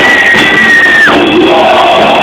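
Live rock band playing loud and distorted, with a single high note that slides up, holds for about a second and then drops away.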